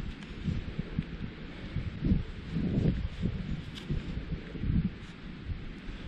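Gloved fingers rubbing and crumbling soil off a small silver coin dug from a pasture: an irregular soft rustling and scuffing over a faint steady outdoor hiss.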